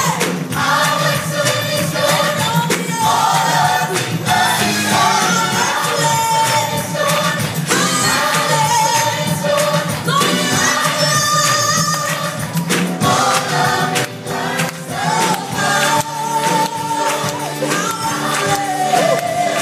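Large choir singing a gospel song live with band and percussion backing, heard from far back in a big hall.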